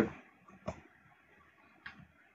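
Three faint, short computer mouse clicks: two close together about half a second in, one near the end.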